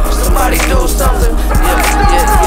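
Hip hop beat playing with no rapping: a steady deep bass under regular drum hits, with melodic lines sliding up and down above it.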